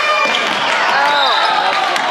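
Live basketball game in a gymnasium: a ball bouncing on the hardwood court amid overlapping voices from players and crowd, with a few brief high-pitched squeaks.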